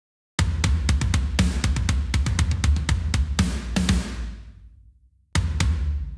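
Programmed metal drum part played back from an Unwavering Studios sampled drum kit: rapid kick drum under a tom fill with snare and cymbals. It starts about half a second in, rings out and fades around four to five seconds in, then starts again near the end.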